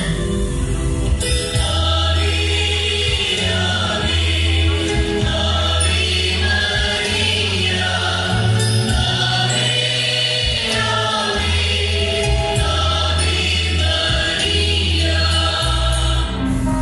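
Choral Christian music: voices singing in long held lines over sustained low bass notes that change every second or two.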